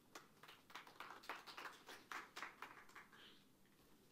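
Faint, sparse applause from a small audience: scattered hand claps that thin out after about three seconds.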